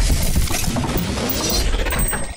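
Logo-reveal sound effect: a loud, sustained crashing and shattering sound with a deep rumble underneath.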